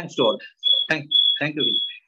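Electronic beeping: one high tone repeating in short pulses about twice a second, with brief bits of a voice between the first few beeps.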